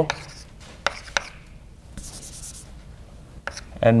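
Chalk writing on a blackboard: a few sharp taps as the chalk strikes the board, and a half-second scratchy stroke about two seconds in.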